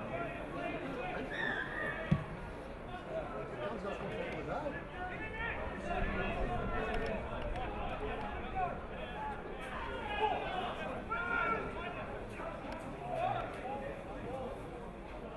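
Spectators chatting indistinctly close by, with one sharp thump about two seconds in: a rugby ball kicked off the tee for a conversion attempt.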